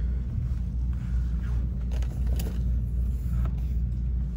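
Steady low rumble of background noise in a large store, with a few faint clicks.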